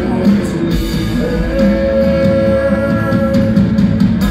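Rock band playing live through a concert PA: electric guitars, bass and drums, with a long held note coming in about a second in.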